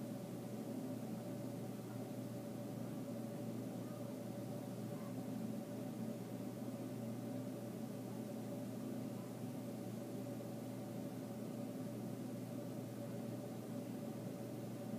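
Steady indoor background hum with an even hiss and a faint steady tone, unchanging throughout.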